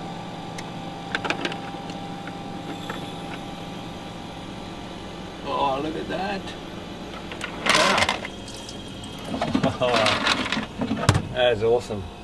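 Devanti portable countertop ice maker running with a steady electric hum as it releases a batch of freshly frozen cubes off its chilling prongs into the basket, with a brief clatter about eight seconds in.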